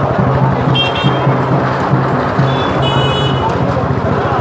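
Loud street-procession din: music with a pulsing low beat, mixed with voices, and two short high-pitched tones about one and three seconds in.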